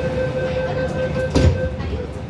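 MTR M-Train interior: the car's steady running noise with a high, even electrical whine that cuts off near the end. There is a single thump about one and a half seconds in.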